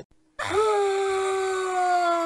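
A short click, then about half a second in a long, loud scream that rises briefly and then holds one steady pitch.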